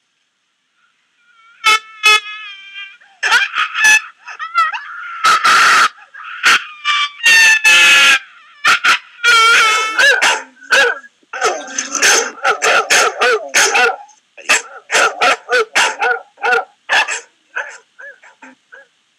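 Electronic sounds from a Max MSP patch driven by an ultrasonic distance sensor: after a short silence, a quick irregular string of short pitched sounds, some wavering and some gliding in pitch, changing as the distance reading changes.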